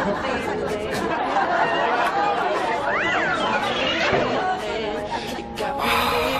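Several people's voices chattering over one another, no clear words, with a high rising-and-falling vocal call about three seconds in. Music comes in near the end.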